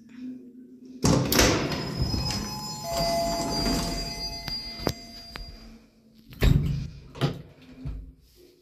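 Old elevator's manual swing landing door pulled open with a loud clunk about a second in, followed by a few seconds of metallic rattling and squeaking as it moves. Near the end it is swung shut with two sharp bangs, a slam and then the latch.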